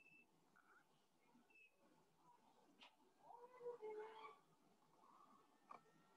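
A faint, brief animal call about halfway through, gliding up and then down in pitch, with a couple of sharp clicks around it.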